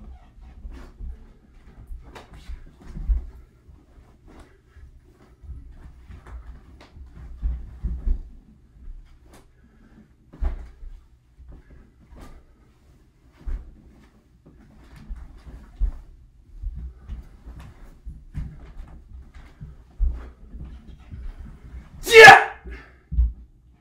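Bare feet stepping, pivoting and stamping on a wooden floor, with the rustle of a heavy cotton taekwondo uniform, as a taekwondo form is performed: irregular thumps with short scuffs between, the strongest about 3, 8 and 10 seconds in.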